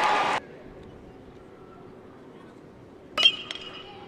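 A metal baseball bat hitting a pitch: one sharp ping with a short ringing tail about three seconds in, over faint ballpark ambience. Just after the start the louder sound before it cuts off abruptly at an edit.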